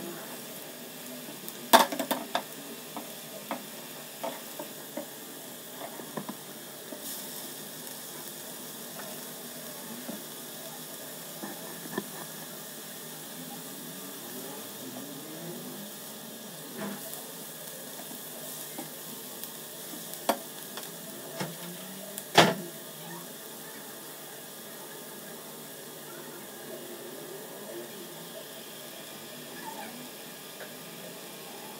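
Chopped onion with cumin seeds sizzling steadily in hot mustard oil in a nonstick pan while being stirred, with scattered sharp knocks of the spatula against the pan. The loudest knock comes about three-quarters of the way through.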